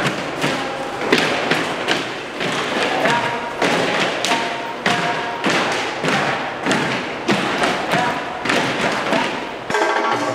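Steady rhythmic thumping, about two strong beats a second, with music and voices underneath.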